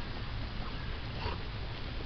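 Golden retriever sniffing at a tennis ball in the grass: a few faint, short sniffs over a steady low rumble.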